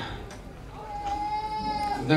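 A single steady high-pitched note with bright overtones, held for just over a second from about the middle on; the first half is quiet.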